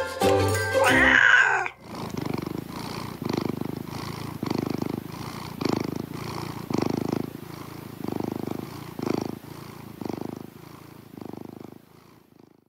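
A short bit of outro music ends about two seconds in, then a domestic cat purring, the purr swelling and fading about once a second with each breath.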